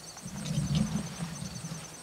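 A low sound lasting about a second and a half, loudest about a second in, over the steady, fast, high pulsing chirp of insects.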